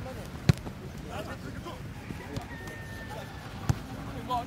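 A football being kicked: a sharp thump about half a second in and a smaller one near the end, over faint distant shouts of players.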